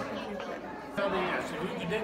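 Indistinct chatter of a roomful of people talking at once, no single voice clear.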